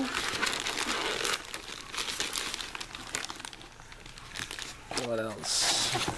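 Clear plastic bag crinkling as a rifle scope wrapped in it is handled and lifted out of its foam box insert, loudest in the first second and a half, then thinning to scattered crackles. A short hum from a voice comes near the end.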